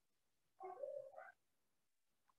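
Near silence, broken by one faint high-pitched cry a little over half a second long, its pitch dipping and then rising, a little after half a second in.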